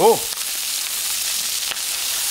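Bone-in chicken legs searing in hot olive oil in a cast-iron pot over high heat, with a steady frying sizzle and a few faint spatter clicks.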